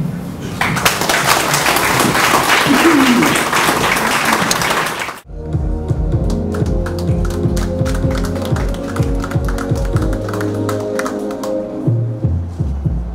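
Audience applauding for about four seconds. It cuts off suddenly into recorded music with a steady bass beat.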